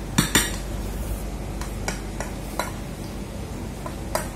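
Metal utensil clinking against a dish: two sharp clinks close together near the start, then a few lighter scattered clinks, over a steady low hum.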